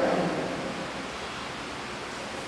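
Steady hiss of background noise. A man's voice, amplified through a handheld microphone, dies away in echo during the first half-second.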